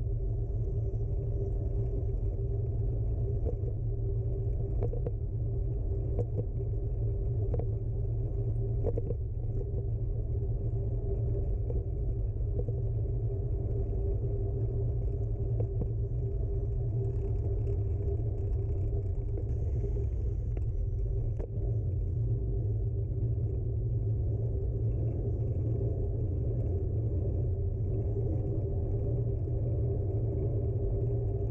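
Bicycle rolling over paving stones, heard through a handlebar-mounted camera: a steady low rumble of tyre and frame vibration with a steady hum running underneath and a few faint clicks.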